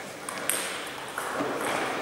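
Table tennis ball bouncing a few times: sharp clicks, the loudest about half a second in.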